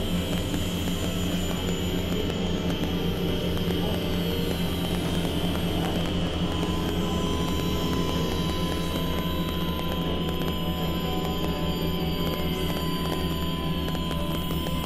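Electronic synthesizer drone music: a steady, dense low drone with a high held tone above it, and thin high tones repeatedly gliding downward. A new steady mid-pitched tone joins about halfway through.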